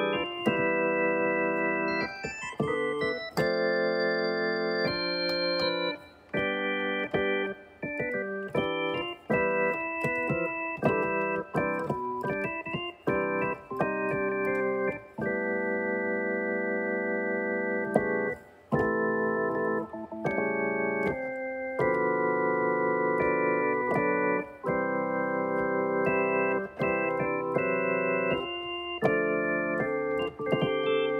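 Electronic keyboard played in chords with an organ-like tone. Each chord is held at an even level and then cut off sharply, with a new chord every second or two.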